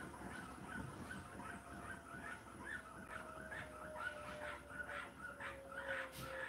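Hotpoint NSWR843C washing machine tumbling a wet load during the wash, with a low rumble of the drum and a thin motor whine that slowly falls in pitch, over wavering high squeaky chirps.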